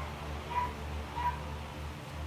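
Three short, high calls like a small animal's, spread over about a second and a half, over a steady low hum.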